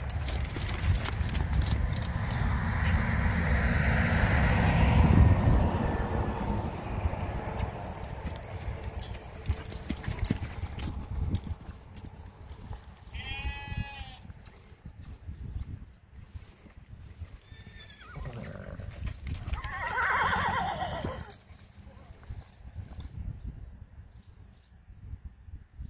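Hoofbeats of a ridden mustang gelding moving in a sand round pen, loudest in the first five seconds as the horse passes close by. A horse whinnies about 13 seconds in, and there is another short call around 20 seconds.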